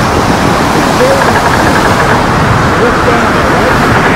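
Hurricane eyewall wind and driving rain: a loud, unbroken rush with short wavering whistles from the gusts. A voice says "oh" near the end.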